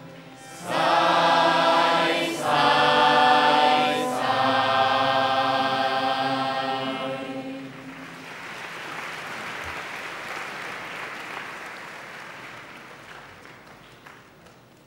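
Choir singing a closing phrase as three held chords, the last one the longest, followed about eight seconds in by audience applause that slowly fades away.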